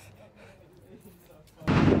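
Wind blowing across the microphone, starting suddenly and loud about one and a half seconds in as a rough, steady rush. Before it there is only a faint low murmur.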